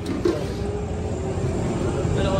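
Steady low mechanical rumble with a faint held drone over it.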